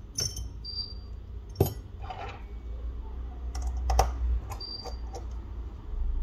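Scattered small clicks and taps of hands handling an opened iPhone and a precision screwdriver on a work mat, with a couple of short, faint metallic rings. A low steady hum runs underneath.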